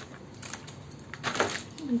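Thin plastic packaging crinkling as a toilet brush is pulled out of its sleeve: a few scattered crackles, the loudest about one and a half seconds in.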